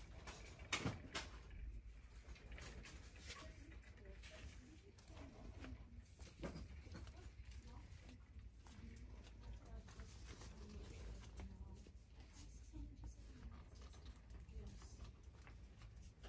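Faint shop background: a low steady hum with a few soft knocks, about a second in and again around six seconds, and faint distant voices.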